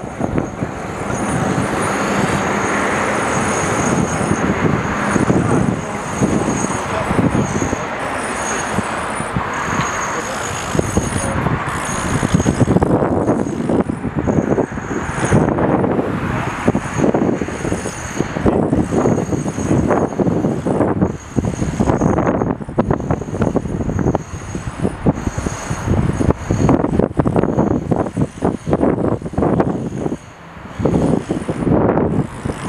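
Road traffic noise from the street: cars passing, loud and uneven throughout.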